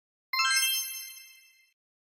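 A bright logo chime sound effect: several clear bell-like tones struck in quick succession a moment in, then ringing and fading away over about a second and a half.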